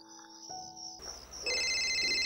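Background music fades out about a second in. Then a mobile phone's electronic ringtone starts, loud and steady, a chord of high tones for an incoming call.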